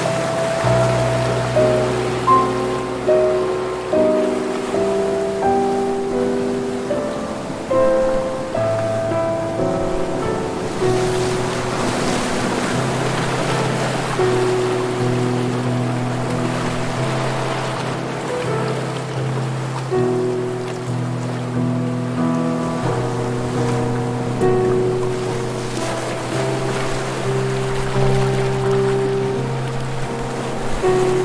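Soft, slow instrumental relaxation music with sustained gentle notes over a low bass, layered over ocean surf. The surf swells louder in the middle and then eases back.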